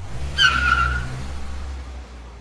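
Car pulling up. The engine runs with a low rumble, and about half a second in the tyres screech briefly as it brakes to a stop. The rumble eases off near the end.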